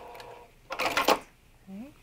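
Electric sewing machine's motor whine stopping as the seam ends, then, about a second in, a short burst of sharp mechanical clicks and clatter from the machine as the stitched piece is taken out.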